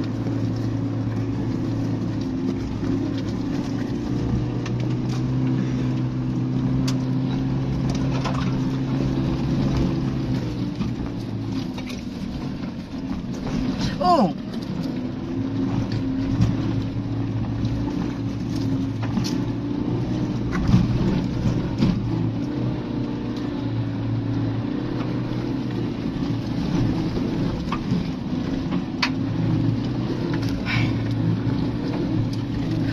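Suzuki Jimny's four-cylinder petrol engine running steadily as the vehicle crawls over a rough, stony forest track, with a few short knocks and rattles from the body over the bumps. A brief wavering squeal comes about halfway through.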